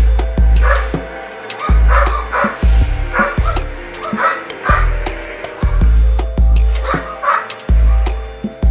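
A dog barking repeatedly, short barks every second or so, some in quick pairs, over background music with deep bass pulses.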